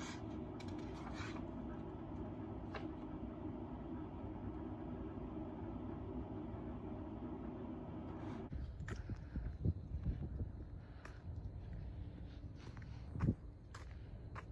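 A steady room hum with the soft rustle of paperback pages being turned by hand. About eight and a half seconds in the hum stops and gives way to irregular low thumps and rustles, the loudest a single knock near the end.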